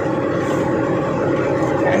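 Heavy truck's engine and road noise heard from inside the cab while driving, a steady even drone.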